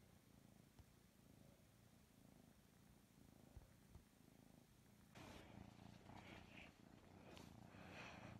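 Kitten purring faintly and steadily, louder from about five seconds in, with soft rustling as a hand plays with it.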